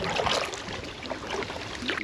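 Water splashing and lapping against the hull of an inflatable packraft as it moves on a river: an even rushing sound that swells a couple of times.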